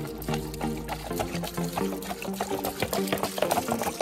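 Background music with a stepping melody, over soda being poured from bottles and splashing into a shallow pool of dark soda.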